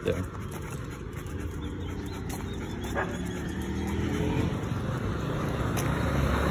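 A motor vehicle's engine hums steadily and grows louder, with a single sharp dog bark about three seconds in.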